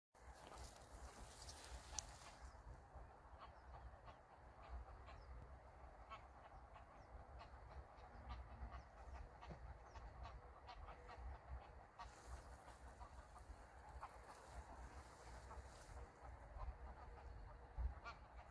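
Quiet wetland ambience: faint distant waterfowl calls over a low, fluctuating rumble.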